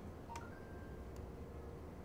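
Two faint computer mouse clicks, the press and release of a text selection, about a second apart, over a low steady hum. A faint short tone sounds between the clicks.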